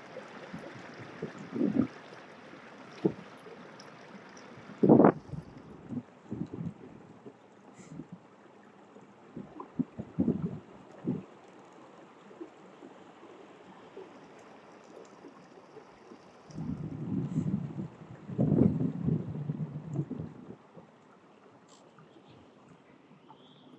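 Water lapping and gurgling against a moving kayak's hull, with wind buffeting the microphone. A few low knocks and bumps come through, the loudest about five seconds in, and a rougher patch of splashing or buffeting comes near the end.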